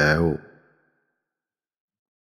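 A man's voice reading Thai scripture ends a phrase about half a second in, then complete silence.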